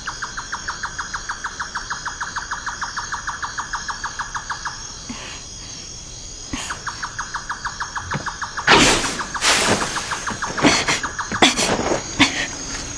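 Night insect chorus of cricket-like chirping: a fast, even trill of pulses several times a second over a steady high buzz. It breaks off for about two seconds in the middle, then resumes. Around nine seconds in, two short, louder bursts of rustling noise cut across it.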